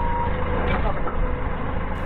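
Doosan 4.5-ton forklift engine idling steadily with a low rumble.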